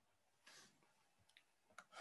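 Faint clicking at a computer as the page is scrolled and a line is drawn on it: a short soft scuff about half a second in, then several light, sharp clicks in the second half.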